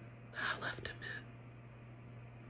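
A woman's brief whispered words, lasting about a second, over a steady low electrical hum.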